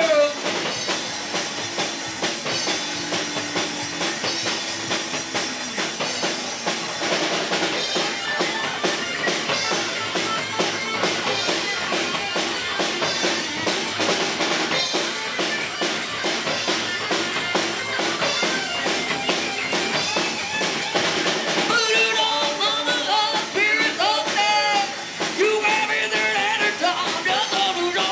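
Live rock band playing a mostly instrumental passage, with a fast, busy drum kit driving electric guitar and bass. A singer's voice comes back in near the end.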